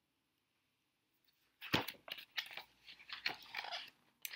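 Pages of a picture book being handled and turned. A run of paper rustles and crackles starts a little under two seconds in.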